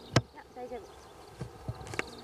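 A sharp, loud knock just after the start, a short voice sound, then a few lighter clicks near the end.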